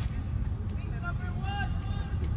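Players' voices calling out across a football pitch, a few short shouts about a second in, over a steady low rumble, with a couple of sharp clicks near the end.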